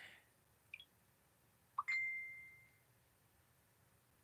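A faint tick, then near two seconds in a click and a single electronic ding, one steady high tone fading away over about a second, from a smartphone.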